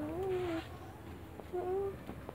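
Goats bleating: one long, rising bleat that ends about half a second in, then a shorter bleat near the end.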